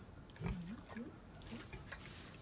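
Domestic pig giving a few short, low grunts, the first and loudest about half a second in, with a few sharp clicks between them.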